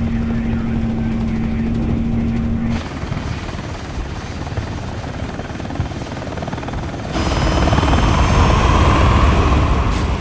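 Military helicopter rotors and engine, edited in three shots: first a steady cabin drone with a low hum, then a cut at about three seconds to quieter outside rotor noise, then louder rotor wash from about seven seconds in as the aircraft sits close by.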